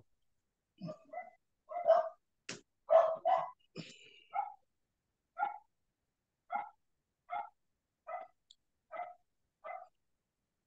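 A dog barking repeatedly, picked up over a video call: a quick run of louder barks in the first few seconds, then single barks at about one a second.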